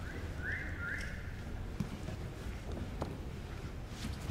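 Faint arena background of a grappling match: a steady low hum and murmur, with two brief high tones about half a second and a second in and a few light knocks.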